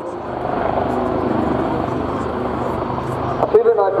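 AgustaWestland AW159 Wildcat helicopter flying towards the listener: steady noise of its main rotor and twin turboshaft engines, which swells slightly just after the start and holds.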